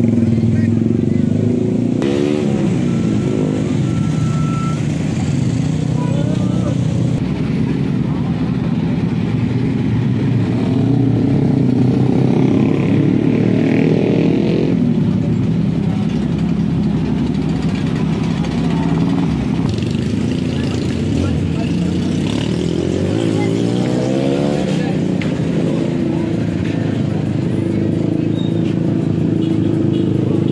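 Motorcycle engines running in slow, crowded street traffic, blipped up in rising revs about two seconds in and again around twenty-three seconds in. Car engines run among them, with chatter from the crowd.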